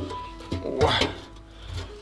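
Quiet background music with a few held notes.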